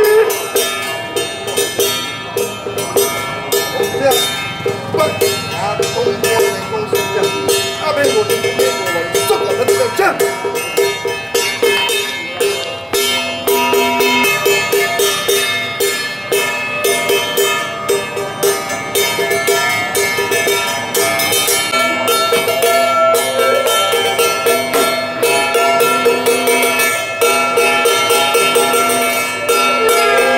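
Temple ritual percussion: fast, steady clanging of small metal bells or gongs with drum beats. A voice chants over it in places, most clearly a few seconds in.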